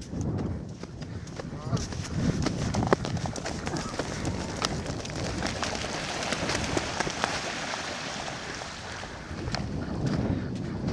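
A flock of ducks and geese scattering, wings flapping and birds calling, with running footsteps on sand.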